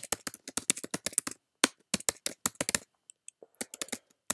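Typing on a computer keyboard: a quick, uneven run of key clicks, with a brief pause about three quarters of the way through before the typing resumes.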